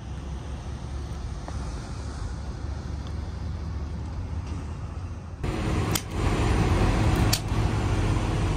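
Steady low rumble of vehicle traffic. About five seconds in, it gives way to a louder, steady hum of idling truck engines, with two sharp clicks.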